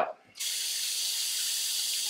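Sink tap running in a steady hiss, turned on about half a second in and shut off at the very end.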